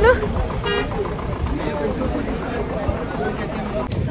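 Outdoor background noise with a steady low rumble and faint voices in the distance, and a short toot about three-quarters of a second in.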